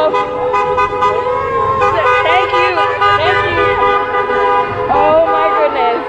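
Several car horns honking in long, overlapping blasts as a line of cars drives past in celebration, with people's voices calling out and cheering over them.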